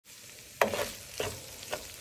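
White rice frying in a pan with a steady sizzle, stirred with a wooden spatula: three scraping strokes against the pan, the first the loudest.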